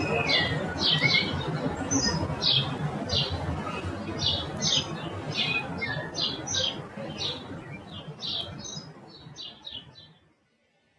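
A crowd of birds chirping and squawking, several short, high, downward-sliding calls a second, over a steady low rushing background. The whole sound fades away near the end and cuts off.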